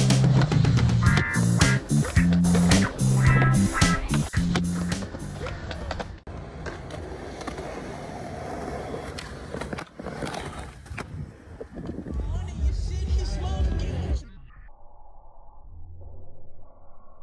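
Skateboarding: urethane wheels rolling over the ground and the board clacking with sharp pops and landings, mixed with music that has a steady low beat. The sound turns thinner and quieter about two seconds before the end.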